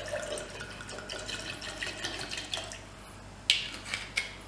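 Campari poured from a glass bottle into a stainless steel cocktail shaker: a steady trickle of liquid with a faint gurgle, stopping near the end.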